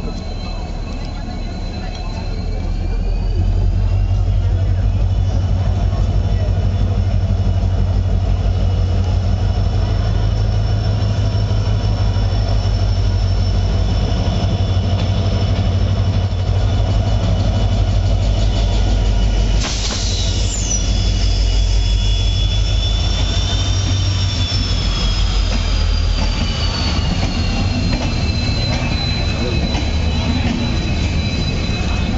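A passenger express train pulling into a platform. Its heavy low rumble grows loud about three seconds in as the locomotive arrives, and holds as the locomotive and then the coaches roll past. High, steady squealing tones from the running gear shift up early on and glide down over the last few seconds as the train slows, with a sharp clank about twenty seconds in.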